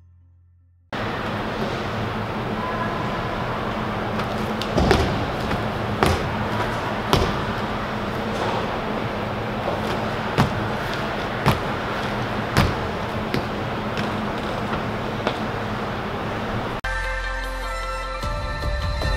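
Feet landing hard on a gym floor as an athlete bounds across it: two runs of three landings about a second apart, over a steady background hiss. Music starts near the end.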